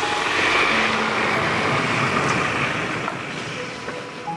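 Pickup truck driving in, a steady rush of engine and tyre noise that slowly fades.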